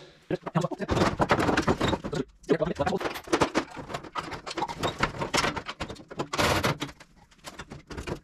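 Steel front fender of a vintage Dodge Power Wagon being handled and fitted against the truck: a dense run of clanks, knocks and scrapes of sheet metal, with a short pause about two seconds in.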